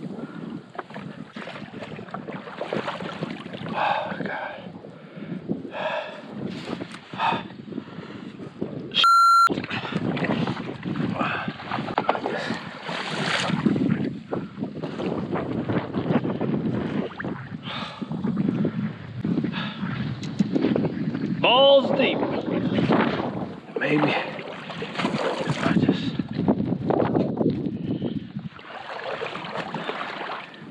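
Wind buffeting the microphone and water lapping and sloshing along a kayak's hull as it moves through shallow water, in uneven surges. A short, loud, high steady tone cuts in briefly about nine seconds in.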